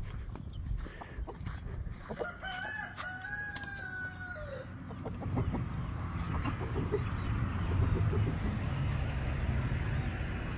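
A rooster crowing once: a long call of about two seconds, starting about two and a half seconds in and ending on a falling note, over a low rumbling noise.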